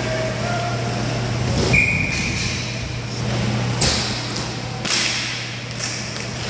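Inline hockey play on a plastic rink floor: three sharp knocks of sticks and puck against the floor and boards, the loudest about two seconds in, followed at once by a brief high squeak, all over a steady hum in a large hall.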